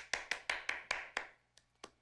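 Hand clapping: a quick run of sharp claps, about five a second, that slows and dies away about a second and a half in.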